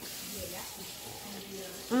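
A steady hissing sip lasting about two seconds: orange juice drawn in through the lips from the rim of a plastic cup.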